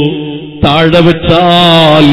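A man's voice chanting in long, drawn-out melodic notes. It drops away briefly at the start and comes back about half a second in with another held, wavering note.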